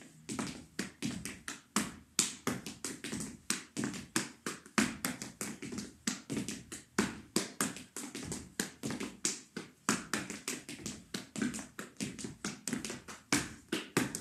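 Afro-Peruvian zapateo footwork: hard-soled shoes striking a wooden floor in a fast, unbroken run of sharp taps, several a second, with hand-to-heel slaps worked into the sequence.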